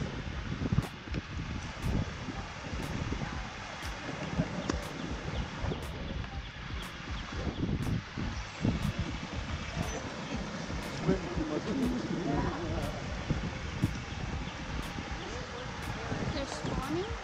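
Steady rush of water pouring over a curved concrete dam spillway, with irregular gusts of wind buffeting the microphone.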